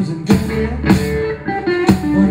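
Live rock band playing an instrumental passage, electric guitar prominent over bass and drums, with sharp drum hits.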